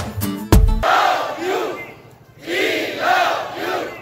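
Music cuts off about a second in. A large crowd then shouts together in unison twice, each shout lasting about a second and a half with a short pause between.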